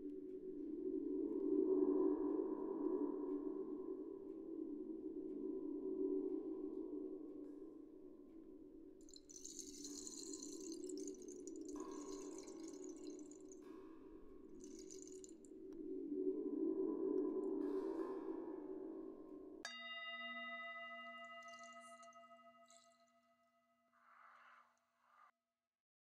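A low sustained drone that swells and fades, with brief bursts of high hiss over it in the middle; about four seconds before the end a singing bowl is struck once and rings with several steady tones, fading away.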